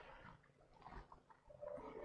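Near silence: room tone in a pause between sentences, with a faint steady tone starting near the end.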